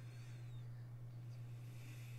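Faint steady low hum, with a faint falling high-pitched tone about half a second in.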